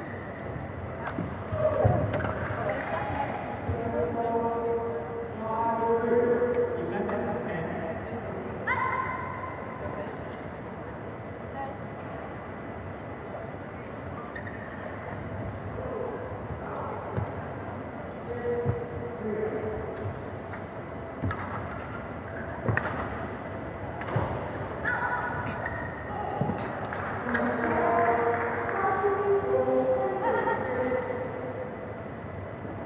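Voices talking in a badminton hall, with scattered sharp knocks of rackets hitting a shuttlecock during warm-up rallies.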